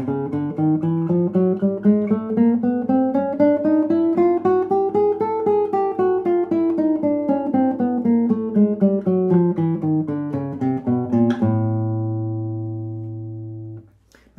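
Nylon-string classical guitar playing a two-octave chromatic scale from A in closed position, one note after another at about four notes a second, climbing in pitch for the first half and coming back down. The last low note rings for about two and a half seconds and is cut off near the end.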